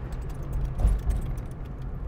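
Cabin sound of a 1975 AMC Hornet's original 304 V8 running steadily while driving, with light clicking rattles throughout and a low thump a little under a second in.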